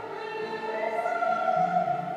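Liturgical singing with long held notes.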